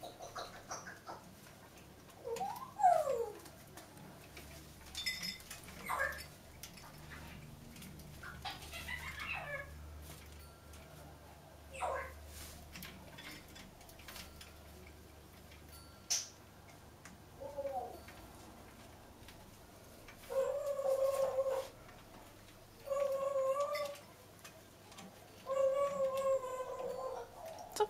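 Congo African grey parrot calling at scattered moments: short whistles and chirps, including a falling whistle a few seconds in, with a single sharp click midway. Near the end come three held, even-pitched calls of about a second each.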